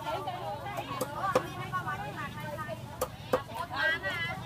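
A cleaver chopping on a round wooden block: four sharp chops in two pairs, about two seconds apart, over voices in the background.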